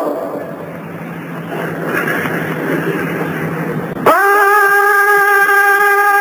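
Old live recording of Quranic recitation: for about four seconds there is a pause filled with crowd murmur over hiss and a low hum, then about four seconds in the male reciter comes back in on one long, steady, melismatic held note.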